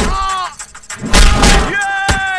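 A cry falling in pitch, then a loud, sharp punch impact about a second in, then another held cry near the end.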